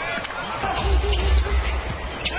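Basketball game broadcast sound: a basketball being dribbled on a hardwood court amid arena crowd noise, with short sharp bounces, and a low hum that comes in about a second in.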